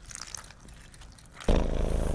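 Milk pouring faintly from a plastic bottle. About one and a half seconds in, a sudden, much louder low sound cuts in.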